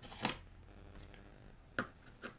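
Handling clicks of a digital caliper being picked up and its metal jaws closed onto a knife blade: a sharp click about a quarter second in and another near the end, over a faint steady hum.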